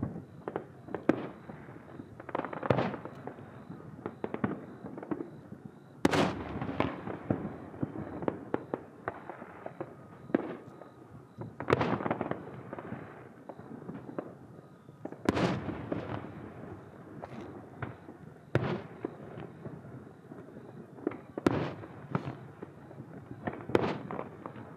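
Fireworks display: aerial shells bursting in a string of booms, the biggest about every three to six seconds, each trailing off in an echo, with smaller pops and crackling between them.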